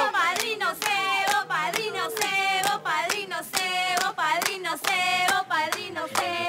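A group of people clapping in rhythm, with voices singing over the clapping.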